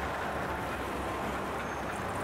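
Steady rushing noise of road traffic on a highway, with no distinct events.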